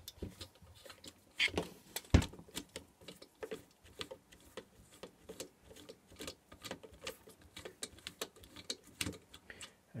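Irregular light clicks and taps of hands and a tool on the metal burner assembly of a diesel night heater while it is handled and turned, with one sharper knock about two seconds in.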